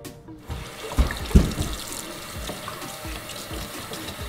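Steady hiss of kitchen work at the stove, with two low knocks about a second in, over faint background music.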